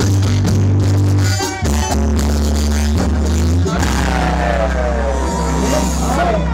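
Live band playing, with congas, bass guitar and keyboard. Deep held bass notes change about every second and a half, and from about four seconds in one long low note is held under gliding higher tones.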